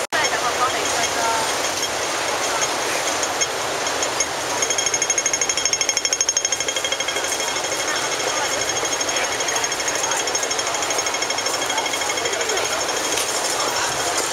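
Busy city street crowd chattering, with a pedestrian crossing signal's rapid ticking cutting through. The ticking is loudest for about two seconds starting about four and a half seconds in, then carries on more faintly.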